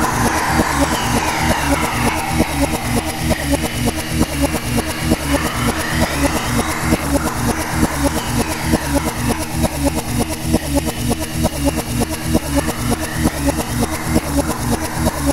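Trance/techno track in a DJ mix: a steady four-to-the-floor kick beat under synth tones that sweep up and down in pitch every few seconds.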